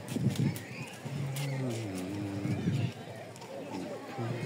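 A man's voice singing long, held notes that glide slowly in pitch.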